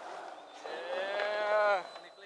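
A man's long, drawn-out shout, held on one pitch for a little over a second and falling away at the end: a cheer over a landed skateboard trick.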